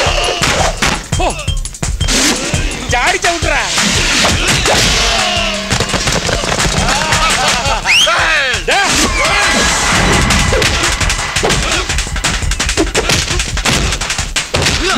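Film fight-scene soundtrack: a rapid run of punch and impact sound effects, with men shouting and yelling over background music.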